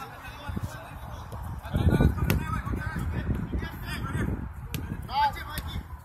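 Soccer players shouting to one another across the pitch, with one loud call near the end, over a low rumble on the microphone from about two seconds in and a few sharp clicks.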